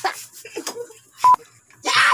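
A short, loud censor bleep: a single steady high beep about a second in, cutting into snatches of speech.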